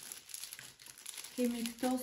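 Clear plastic packaging crinkling as it is handled, with a woman's voice starting in the second half.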